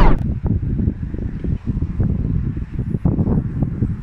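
Wind buffeting a phone microphone: an uneven low rumble that keeps rising and falling.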